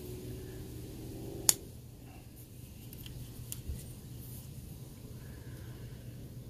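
A vintage Sabre Japan hawkbill folding pruning knife's blade snapping open against its strong backspring, giving one sharp metallic click about one and a half seconds in. A much fainter click follows about two seconds later, over a low steady hum.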